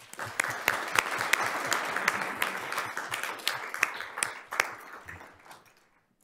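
Audience applauding, a dense patter of many hands clapping that starts suddenly and fades away over the last couple of seconds.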